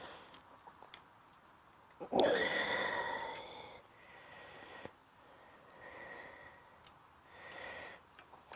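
A man's loud breathy exhale, like a heavy sigh, about two seconds in, lasting under two seconds. It is preceded by a few faint small clicks as he works a plastic reflector onto the rear wheel's spokes.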